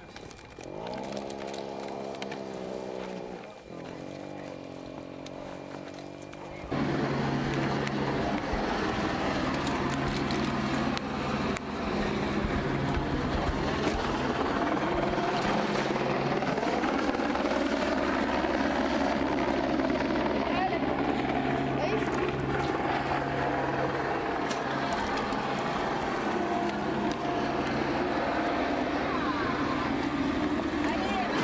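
An engine running steadily, with a constant low hum under a loud rushing noise, starting suddenly about seven seconds in. Before that there is a quieter pitched sound that slides down in pitch and then holds. Voices are mixed in.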